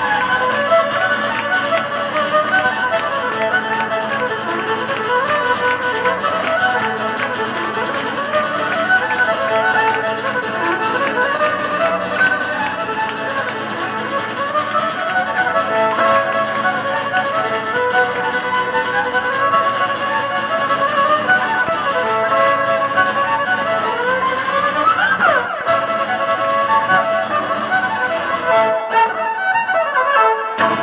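Live Irish traditional tune on fiddle over strummed acoustic guitar chords, played without a break, with one quick sliding note up and back down on the fiddle near the end.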